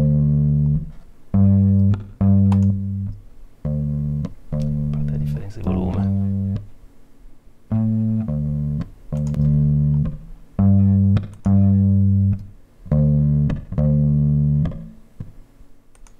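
Electric bass line, the verse bass of a song on a Höfner bass, played back solo with a reverb and harmonic distortion on it: a repeating riff of short held notes, mostly in pairs with brief gaps between.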